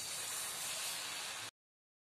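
Batter-coated cauliflower pieces sizzling as they deep-fry in hot oil, a steady hiss that cuts off suddenly about one and a half seconds in.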